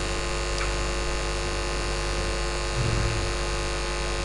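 Steady electrical mains hum with hiss from the microphone and sound system, with no speech.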